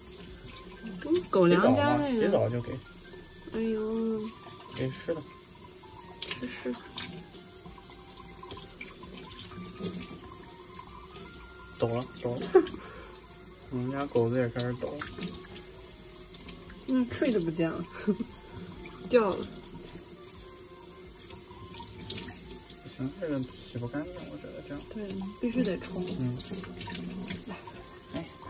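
Kitchen faucet running into a stainless steel sink, water splashing as a wet puppy is rinsed by hand, with short bursts of voice over it now and then.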